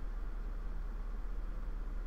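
Room tone: a steady low hum with a faint hiss underneath, and no other sound.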